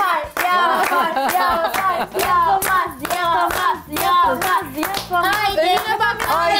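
A group of women clapping in a steady rhythm, with their voices chanting along over the claps as a teasing cheer.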